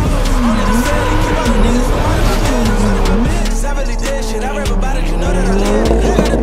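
Turbocharged 2JZ-GTE inline-six drift car at full slide, its engine revs rising and falling several times with tyre squeal, under a hip-hop music track.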